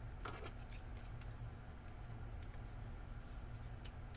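Faint, scattered clicks and a brief rustle of a trading card and its clear plastic holder being handled, over a low steady room hum.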